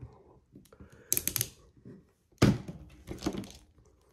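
Clicks and knocks from a plastic action figure being handled and posed: a quick cluster of sharp clicks about a second in, then a single louder knock and a few lighter taps.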